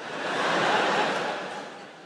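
Large audience laughing, swelling in the first second and then dying away.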